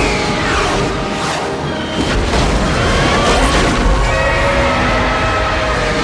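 Dramatic film score over a fighter jet passing with a falling whine in the first second. Several missile explosions boom on the monster between about one and three and a half seconds in.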